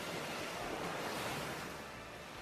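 Recorded ocean surf: a steady wash of waves with the music nearly gone, and faint sustained tones coming back in near the end.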